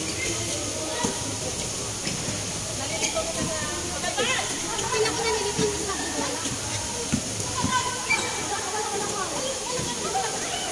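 Players calling out and chattering, with no clear words, during a basketball game on an outdoor court, with a few short thuds of the basketball. A steady hiss of background noise runs underneath, and the voices grow busier about halfway through.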